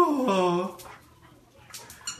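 A dog's whining call: one cry of under a second that falls steeply in pitch, then a few faint clicks near the end.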